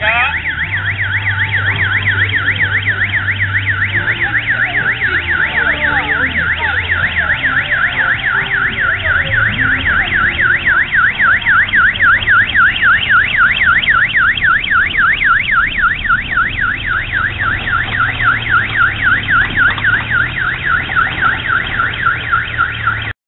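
An electronic siren wailing up after a rising start, then warbling rapidly up and down, about four times a second, with a low steady hum underneath.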